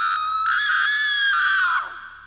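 A single high-pitched human scream, held steady for nearly two seconds, then falling in pitch and dying away near the end with a short echo.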